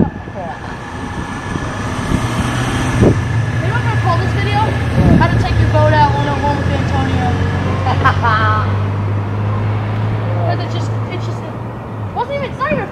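A four-wheeler's engine idling with a steady low hum that sets in about two seconds in, with faint voices over it.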